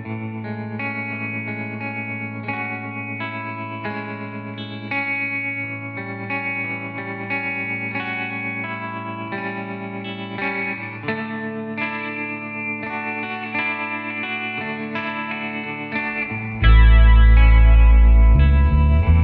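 Instrumental passage of a rock song: an electric guitar picks a melody at about two notes a second over a held low note. Near the end a much louder deep bass comes in suddenly and the music swells.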